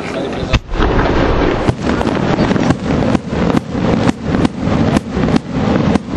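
Aerial firework shells bursting in a rapid string, about two sharp bangs a second after the first about half a second in, over a continuous rumble from the display.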